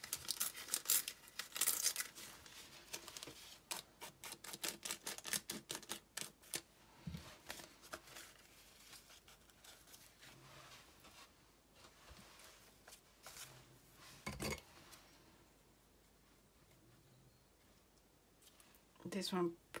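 Thin paper being torn by hand in small bits, a quick run of fine crackling rips over the first several seconds, then sparser paper rustling with a couple of soft knocks.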